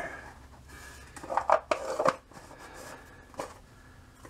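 A few light clicks and knocks of handling as a shaving soap is put back into its container, a small cluster about one to two seconds in and one more near the end.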